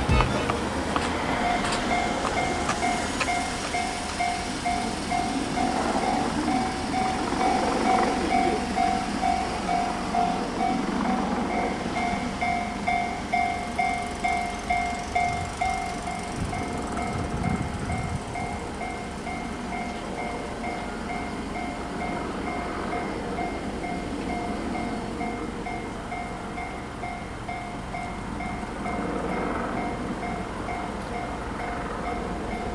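Railway level-crossing alarm ringing: an electronic bell that starts about a second in and repeats in a rapid, even pulse, signalling a train is approaching as the barrier comes down. Passing road traffic runs under it.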